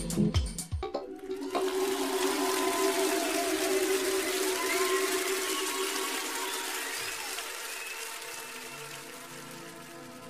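Outro of an electronic dance track: the drum beat stops about a second in, leaving a hissing noise wash over held synth chords that slowly fades down.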